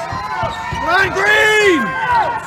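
Basketball dribbled on a hardwood gym floor, with several long rising-and-falling squeaks, typical of sneakers on the court.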